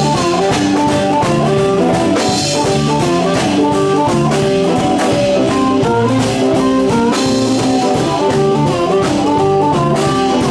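Live blues band playing an instrumental passage: drum kit and bass under a melodic lead line, with cymbal crashes about two and a half and seven seconds in.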